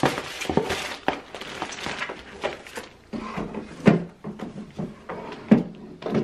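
Packaging being handled: paper and plastic wrapping rustling and items knocking against a cardboard box, in irregular bursts, with sharper knocks about four and five and a half seconds in.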